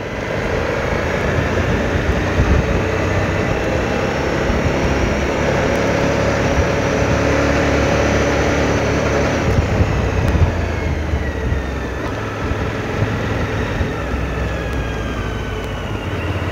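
Suzuki V-Strom motorcycle engine running at road speed, mixed with wind noise on the mic. The engine note shifts in pitch in the second half.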